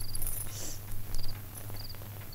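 Crickets chirping: short high trills of three or four quick pulses, repeating about twice a second, over a low steady hum.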